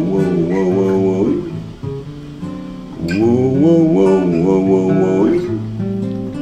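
Gibson Hummingbird acoustic guitar strummed under a man's wordless singing: two long phrases with a wide vibrato, one at the start and one from about three seconds in, with a lull between them.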